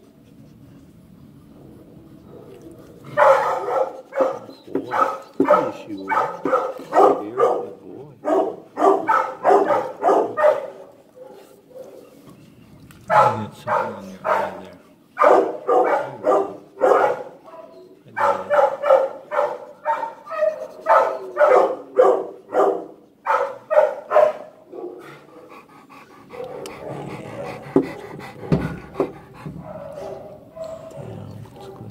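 Dog barking in long runs of short barks, about two a second, with brief pauses between the runs; a quieter, rougher rustling takes over near the end.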